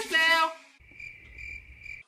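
Electronic dance music with a singing voice cuts off about half a second in. Faint cricket chirping follows, the stock sound effect for an awkward silence.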